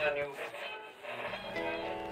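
A voice from a small vintage transistor radio, then plucked acoustic guitar notes begin about a second and a half in and ring on steadily.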